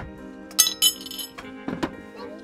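Two sharp clinks of tableware, a quarter second apart about half a second in, each ringing briefly, then a few softer knocks, over background music.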